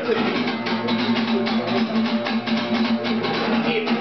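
Live band playing an instrumental passage: strummed guitar over a steady, even beat.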